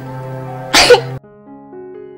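Background music of held notes, with a woman's single loud, sharp sob about a second in; after it the music carries on alone, more quietly.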